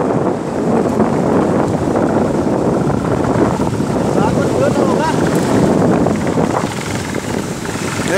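Shallow mountain river rushing over rocks in a steady, loud wash, with wind buffeting the microphone.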